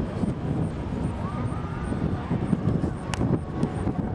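Outdoor ambience: a fluctuating low rumble, with faint distant voices and one sharp click about three seconds in.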